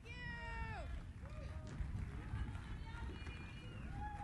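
Faint voices over a low rumble, opening with one high call that falls in pitch during the first second, like a shout or cheer.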